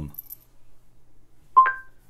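Short electronic two-note chime from a Google Home smart speaker, a lower note followed at once by a higher one, about one and a half seconds in.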